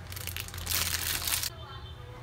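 A metal fork stirring flour and egg in a bowl: a dry scraping, crunching noise that grows louder and stops abruptly about one and a half seconds in, over a steady low hum.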